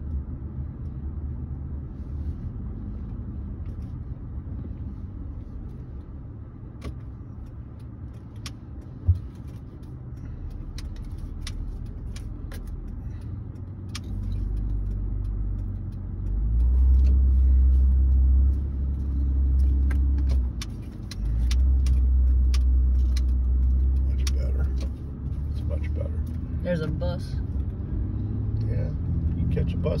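Car driving at low speed, heard from inside the cabin: a steady low engine and road rumble that swells much louder for several seconds from about halfway through. There is a single short knock about nine seconds in.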